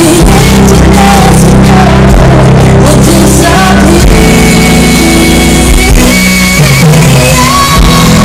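Live rock band playing loud, with a woman singing lead over drums, electric guitar and keyboards.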